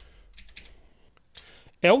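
Keystrokes on a computer keyboard: a few faint, separate key clicks, then the start of speech near the end.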